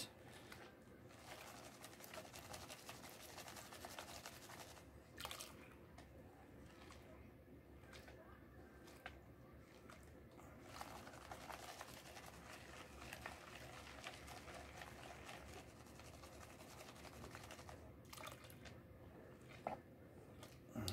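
Faint swishing of water and grit in a plastic gold pan being dipped and tilted in a tub of water as gravel is washed off, with scattered small clicks.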